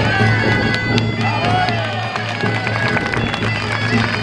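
Gaita de fole (Zamoran bagpipe) playing a traditional dance tune over its steady drone, with beats of the tamboril drum.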